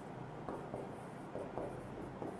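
Marker pen writing on a whiteboard: a handful of short strokes rubbing across the board.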